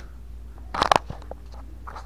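Handling noise from a hand on an RC transmitter: one short crunchy rustle a little under a second in and a few faint clicks, over a low steady hum.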